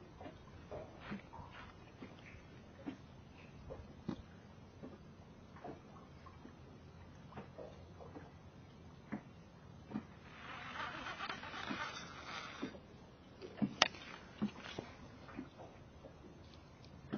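Faint, scattered clicks and taps from a spinning rod and reel being handled during a slow retrieve. A brief rush of hiss comes about eleven seconds in, and a sharper click follows near fourteen seconds.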